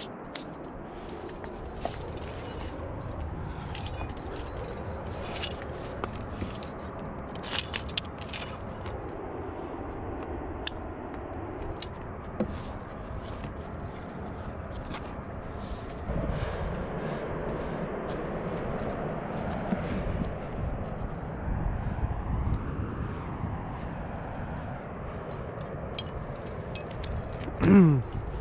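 Climbing gear clinking in scattered sharp clicks (carabiners and cams on the harness) and hands scraping on granite as a climber works up a crack, over a steady low rumble that grows louder about halfway through.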